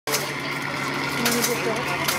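Radio-controlled model tank's electric drive motors running with a steady hum as it moves slowly, under people chatting, with a couple of light clicks about halfway through.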